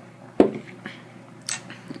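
A drinking glass set down on a wooden table: one sharp knock about half a second in, then a few fainter clicks, over a low steady hum.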